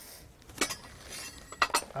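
Loose metal sprockets clinking against each other as they are handled: three light clinks, the last two close together.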